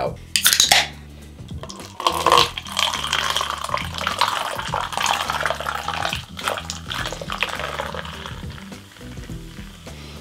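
An aluminium energy-drink can cracked open with a sharp pop and hiss about half a second in. From about two seconds in, the carbonated drink is poured from the can into a cup, splashing and fizzing, under steady background music.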